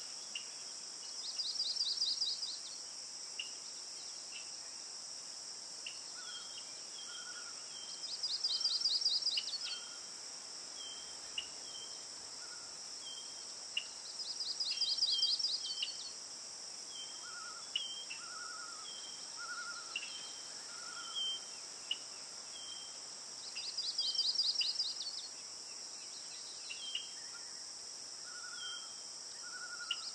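Insects and birds: a steady high-pitched insect drone, a rapid pulsed trill four times at intervals of about six to nine seconds, and short chirps in between.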